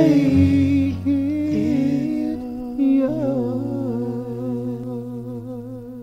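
End of a worship song: a voice holds long notes with vibrato over a sustained low accompaniment chord, the last note held and fading away near the end.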